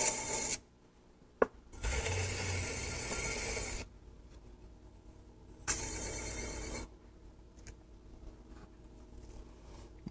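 Wooden tool scraping excess clay from the base of a pot on a turning potter's wheel, in three passes: a brief one at the start, a longer one of about two seconds, and a shorter one a few seconds later, with quiet gaps between. A single sharp click comes between the first two.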